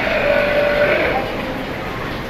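A California sea lion gives one bleating call, lasting about a second, over steady background noise.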